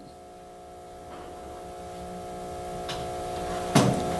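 Soft background music of sustained, held chords, growing slowly louder, with a brief sharp noise near the end.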